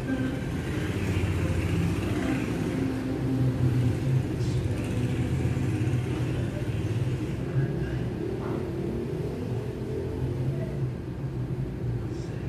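A steady low rumble, like a running motor, under faint higher background sounds.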